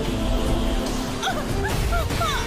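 Dramatic film background music with short, repeated gliding high notes over a heavy low rumble.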